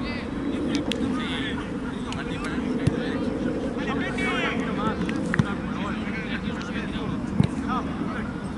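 Players shouting and calling to each other across a football pitch, with a steady low rumble underneath and a few sharp thuds.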